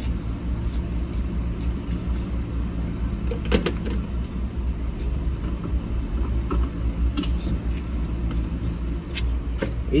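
Steady low hum of an idling vehicle engine at a gas pump, with scattered clicks and a louder clunk about three and a half seconds in.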